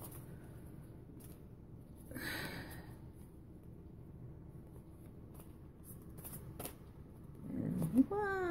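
Tarot cards being shuffled by hand: a quiet rustle of cards, with one louder swish about two seconds in and a few faint card clicks later on.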